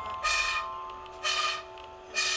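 Soft background piano music: a held chord slowly fading, with a short swishing sound about once a second, three times.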